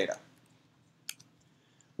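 A single short computer-mouse click about halfway through, against near silence, just after a spoken word ends.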